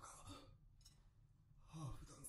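Near silence: a faint voice speaking briefly at the start and again near the end.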